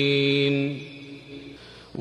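A man's chanted Quran recitation through a mosque's loudspeakers: the last syllable of a verse is held on one steady note and breaks off after under a second. The voice then rings away in the large hall's echo, leaving a low hush.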